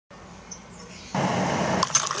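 Faint quiet ambience, then about a second in a steady rush of hot water poured from a kettle into a ceramic mug, with a few light clinks near the end.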